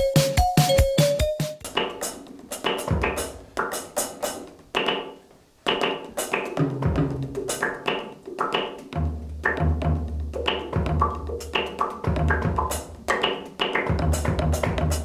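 A short electronic jingle ends about a second and a half in. Then comes a drum beat played on an electronic drum kit, a steady run of kick, snare and cymbal hits, with the kick heaviest in the second half.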